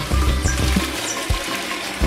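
Water draining from a metal basin through its plug hole and splashing into a plastic bucket beneath, with music playing over it.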